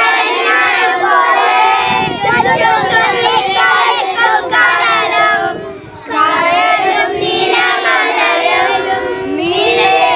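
A group of young children singing together in chorus, with a short break about six seconds in.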